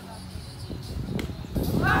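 Outdoor volleyball rally: a single sharp hit of the ball about a second in, then a sudden loud burst of shouting voices near the end.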